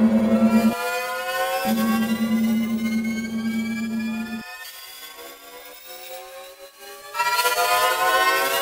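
Horror film sound design: a cluster of tones gliding slowly upward in a tension-building riser over a low steady hum. The hum cuts out briefly under a second in, returns, then stops about four and a half seconds in. The riser drops quieter, then swells loud again near the end.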